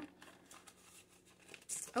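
Faint rustling and crinkling of paper bills and a clear plastic binder pouch being handled.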